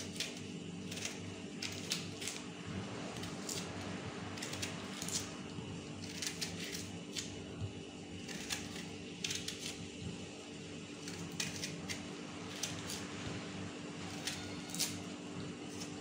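Knife slicing the white pith off a zested lemon: short, crisp cutting strokes at an irregular pace, about one or two a second, over a steady low hum.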